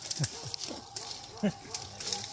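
People's voices: several short, low exclamations that fall in pitch, the loudest about one and a half seconds in.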